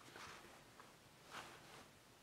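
Near silence: room tone, with one faint, brief noise about two-thirds of the way through.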